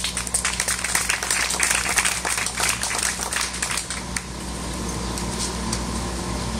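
Small audience applauding, dense clapping that thins out and stops about four seconds in, over a steady low hum.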